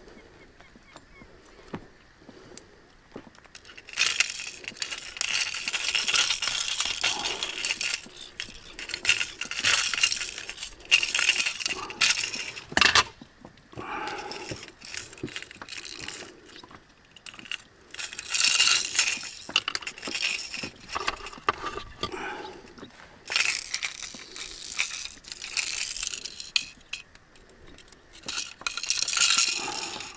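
Metal tackle clinking and rattling in irregular bursts as a jerkbait's treble hooks are worked free from a pike's jammed jaws.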